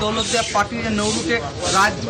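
A man speaking in Bengali, over a steady background hiss.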